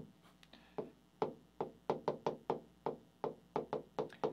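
Stylus pen tapping and clicking on a touchscreen whiteboard's glass while writing a word: an uneven run of light taps, several a second.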